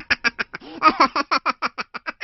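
A Minion's high-pitched cartoon voice in a rapid string of short, evenly spaced syllables, about seven a second.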